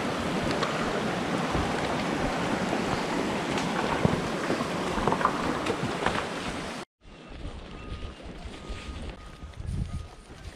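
Water of a small rocky mountain stream rushing and splashing, a loud steady hiss with a few sharp clicks. It cuts off suddenly about seven seconds in, and a much quieter stretch with soft low thuds follows.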